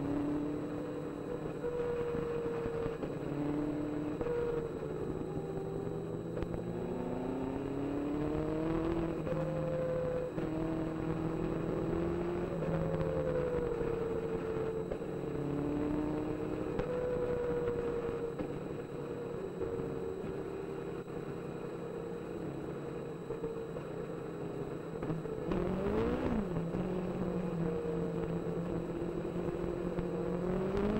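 Onboard sound of a Legend race car's Yamaha motorcycle engine running hard, its revs climbing and dropping again and again through gear changes, with a quick drop and climb in revs near the end. A steady rush of wind and tyre spray sits under it.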